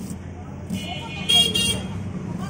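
Street traffic running with a steady low hum, and a vehicle horn sounding for about a second in the second half. A knife taps on a wooden chopping board as an onion is diced.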